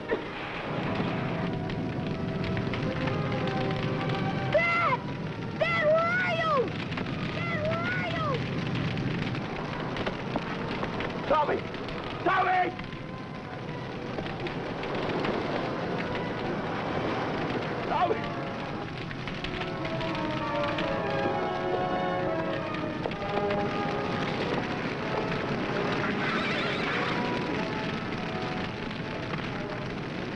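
Forest-fire sound effect, a steady crackling roar, under dramatic orchestral underscore, with a few brief calls cutting through in the first half.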